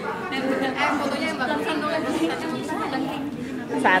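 Several women's voices chattering at once, indistinct and overlapping.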